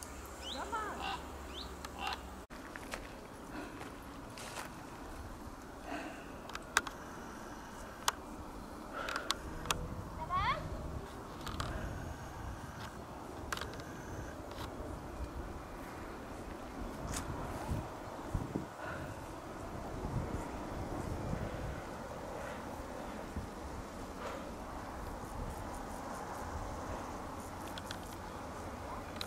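Outdoor ambience of a walk along a rural path: a steady low rumble and hiss, faint voices, and scattered short chirps and clicks, with no single sound standing out.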